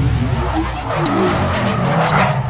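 Sound effect of car tyres skidding and squealing as in a burnout, over a low engine rumble.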